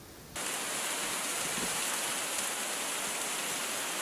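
A steady rush of running water, starting a moment in and holding level.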